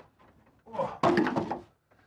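Cardboard shipping box and its packing being handled on a desk, with a dull thunk about a second in.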